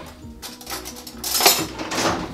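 Metal cutlery clattering as hands rummage through a kitchen utensil drawer, with the loudest clatter about one and a half seconds in.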